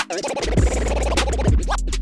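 Turntable scratching of a vocal scratch sample in Serato DJ Pro, run through a Phase timecode controller, over a hip-hop beat with a steady heavy bass. The sound cuts out briefly at the start, then comes back as a dense run of choppy scratch strokes.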